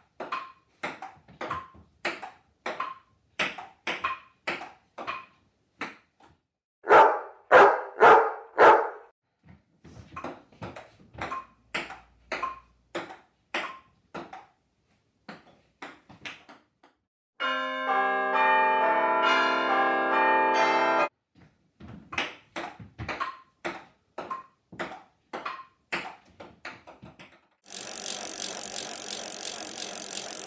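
Table tennis rallies: the ball clicks back and forth off paddles and table, about two hits a second, with short pauses between points and a run of four louder bursts about seven seconds in. Partway through, a held chord of several steady tones sounds for about three and a half seconds. Near the end a loud, even rushing noise begins.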